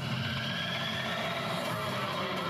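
Background score of a film: a sustained low rumbling drone with steady held tones above it.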